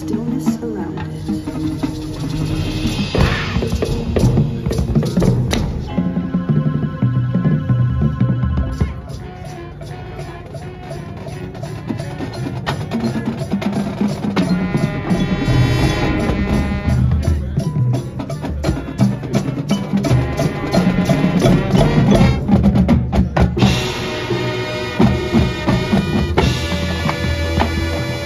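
High school marching band playing its field show: wind chords over a drumline of snare and bass drums, with front-ensemble mallet percussion. The music drops to a quieter passage about nine seconds in, then builds back up to full volume.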